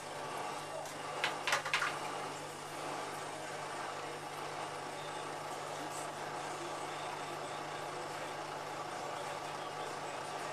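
Whirlpool AWM5145 front-loading washing machine running its spin after the wash: a steady hum and whir from the motor and turning drum, with three sharp knocks close together about a second and a half in.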